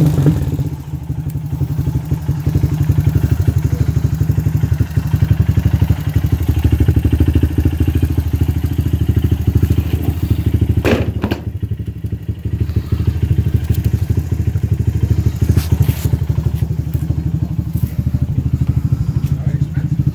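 2003 Honda TRX250EX Sportrax quad's single-cylinder four-stroke engine idling steadily, running well on fresh gas and a new NGK spark plug. A short rushing noise breaks in about eleven seconds in.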